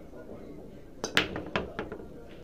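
A 10-ball break shot on a pool table: about a second in, the cue tip clicks on the cue ball, then a sharp loud crack as the cue ball smashes into the rack, followed by several quicker clicks as the balls collide and hit the cushions.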